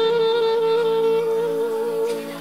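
A wind instrument holding one long steady note, with a low steady tone sounding underneath it.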